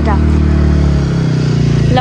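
Motorcycle engine running steadily under load, pulling the bike up a steep slope.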